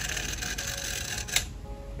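Small SOBO aquarium filter pump motor with a repaired impeller running dry out of the water, with a steady rattling, mechanical noise. A sharp click comes about a second and a half in, after which the noise quietens to a faint hum.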